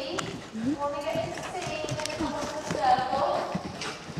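Hoofbeats of a horse moving around an indoor arena on soft footing, with a person's voice speaking over them.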